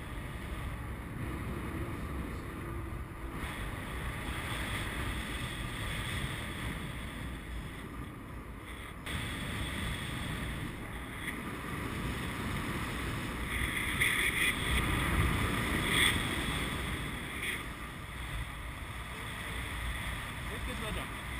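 Airflow rushing over the microphone of a paraglider in flight, a steady wind noise that swells louder for a few seconds about two-thirds of the way through.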